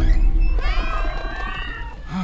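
Many cats meowing at once in an overlapping chorus that starts about half a second in, over background music.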